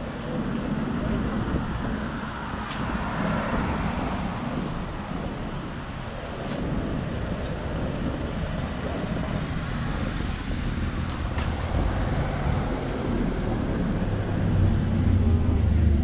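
Street traffic with voices of passersby: cars and a motorcycle pass, and a van's engine rumble grows louder as it comes close near the end.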